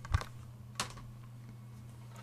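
Two short knocks of a plastic Blu-ray case being handled and set down. The first, near the start, is the louder; the second comes just under a second in. A steady low hum runs underneath.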